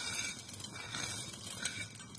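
Dry vermicelli tipped from a glass bowl into a pot of hot water: a faint, soft rustling splash with a couple of light clicks.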